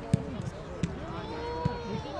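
A football being struck toward goal and a goalkeeper diving to save it: three sharp thumps, the first the loudest, over background voices.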